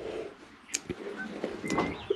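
Quiet ambience inside a poultry coop with chickens and peafowl: a few faint scuffs and clicks and one brief high tone near the end.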